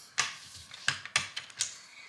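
A handful of sharp, separate plastic clicks and taps: LEGO pieces and minifigures being handled and set down on a hard floor.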